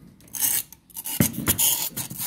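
Handling noise: rough rubbing and scraping in two short stretches, the second one longer, with two light knocks a little after a second in.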